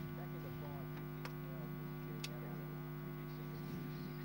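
Steady electrical mains hum with a stack of overtones on the broadcast audio, with two faint sharp clicks about a second and two seconds in.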